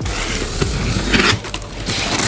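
Box cutter slitting the packing tape along a cardboard box, a scraping, tearing noise with a louder stroke a little past a second in.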